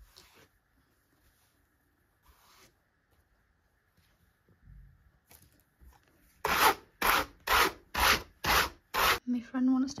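Brush drawn over fibre on a blending board's carding cloth: a few faint strokes, then six loud brushing strokes at about two a second near the end, as the fibre is blended again.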